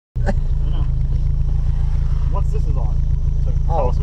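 Mazda Miata's four-cylinder engine idling steadily, heard from inside the car, a low, even rumble; voices talk briefly outside near the end.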